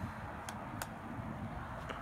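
Low steady background noise with two short, sharp clicks about a third of a second apart, in keeping with a card in a hard plastic holder being handled.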